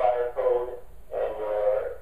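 A man's voice speaking, played back from a video through loudspeakers and picked up in the room, so it sounds thin and tinny.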